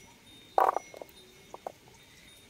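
Shallots knocking against a steel plate as they are handled and dropped in: one louder knock about half a second in, then a few light taps.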